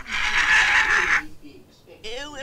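Chimpanzee-like screeching chatter of a puppet monkey on a TV show's soundtrack, about a second long, then cutting off.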